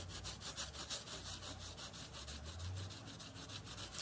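A cotton pad is rubbed quickly back and forth over a steel nail stamping plate, wiping polish off it in a fast, even run of scrubbing strokes.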